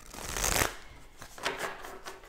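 A deck of cards being shuffled by hand on a wooden table: a rustling flurry of cards loudest about half a second in, then a shorter flurry later.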